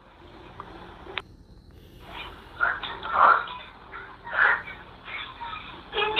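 Indistinct, short voice sounds in a muffled, hissy home recording, about four over the last four seconds, with a sharp click about a second in.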